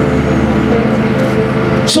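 A steady, low droning hum of several held tones that does not change in pitch or level.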